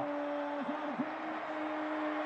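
Stadium crowd noise from a football broadcast, with one steady held tone running through the haze of the crowd.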